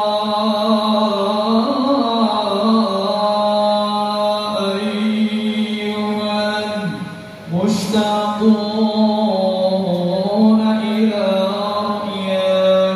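Male voices chanting sholawat, Islamic devotional praise of the Prophet, in long drawn-out held notes. There is a short pause for breath about seven seconds in, then the chant resumes.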